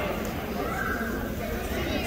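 Spectators' voices calling out across a large gym, with one faint drawn-out shout in the middle.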